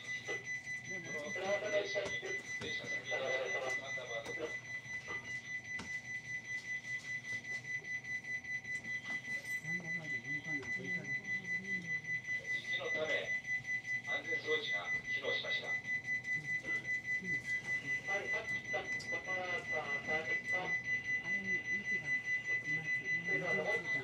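An electronic alarm beeping at one high pitch, pulsing quickly and evenly, with faint voices at times.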